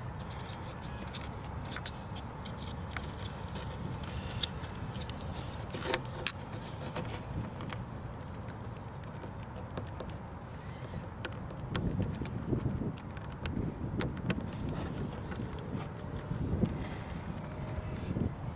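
Small scattered clicks and rustles of fingers working a plastic wiring harness and connector into an RC glider's wing root, over a steady low rumble of wind and outdoor ambience.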